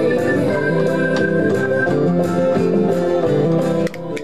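Instrumental stretch of a country song, with guitar and organ and no singing. The music dips briefly just before the end.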